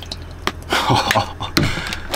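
A man's short, breathy laugh, with a few small clicks from handling things on the table.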